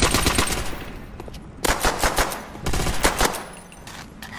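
Automatic gunfire from a mobile shooting game, rapid shots coming in several bursts.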